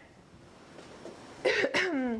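A woman clearing her throat: a short, cough-like burst about one and a half seconds in, with two quick rasps and then a brief falling voiced sound.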